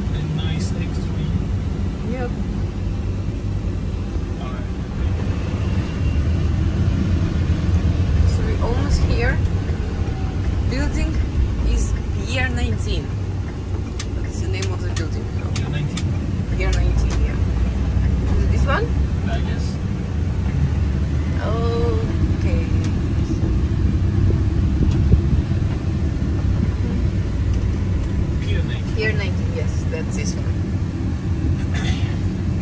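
A box truck's engine and road noise heard from inside the cab while driving: a steady low rumble.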